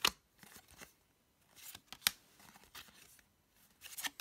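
Stiff cardstock code cards being handled and slid against one another, making short scrapes and a few sharp snaps. The sharpest snap comes about two seconds in.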